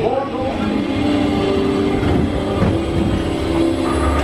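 Spaceship Earth ride vehicle running along its track with a steady low rumble, mixed with the dark ride's scene audio and soundtrack playing around it.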